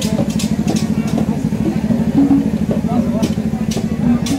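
An engine idling steadily close by, a low, even pulsing rumble with faint voices over it.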